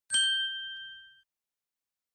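A single bright ding chime, struck once and ringing out for about a second as it fades, used as an intro sound effect.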